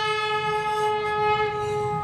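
Kombu, a large C-shaped brass temple horn, sounding one long steady note that dies away near the end.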